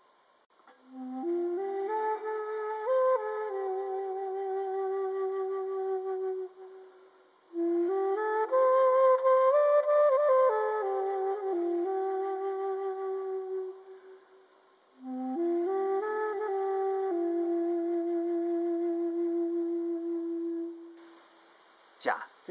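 Ancient Hopi Flute, an end-blown pentatonic flute with a notch mouthpiece, played in three slow phrases. Each phrase climbs stepwise from a low note and settles on a long held note with a gentle vibrato.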